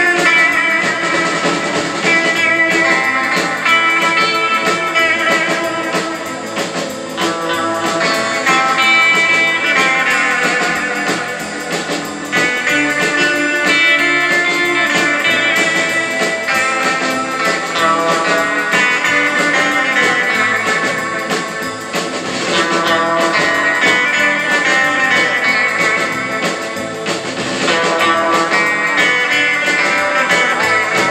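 Live instrumental rautalanka: electric lead guitar playing the melody over bass and a drum kit keeping a steady beat.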